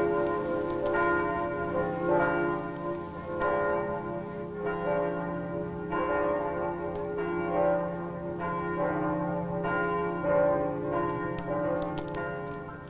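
Church bells ringing, a new stroke about every second over a low sustained hum.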